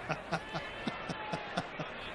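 Laughter: a run of short chuckles, about four a second, each falling in pitch, in response to a joke.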